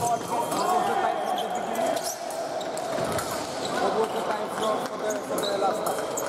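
Ambience of a fencing hall with several bouts going on: a murmur of voices, shoes squeaking and feet thumping on the pistes, and scattered sharp clicks.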